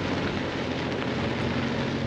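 4WD ute driving on an unsealed dirt track, heard from a camera mounted outside the vehicle: a steady rush of tyre and wind noise over a low engine drone.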